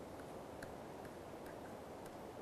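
Faint, irregular clicks and taps of a stylus on a tablet computer's screen as a formula is handwritten, over a steady low hiss.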